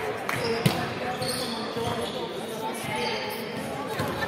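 Volleyball players' voices and calls echoing in a large sports hall, with one sharp smack of the volleyball a little over half a second in and scattered smaller knocks of play on the wooden court.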